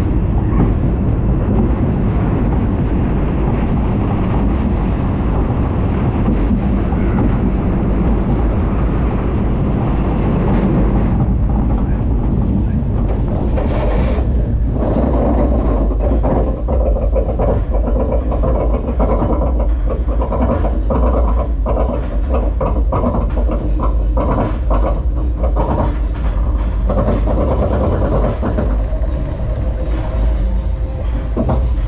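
Steel roller-coaster train running on its track with a steady loud rumble through a dark enclosed section. About halfway through the rumble eases as the train climbs in the open, and a long run of regular clicks follows, about one or two a second, until near the end.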